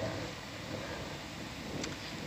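Steady background hum and hiss with no distinct events.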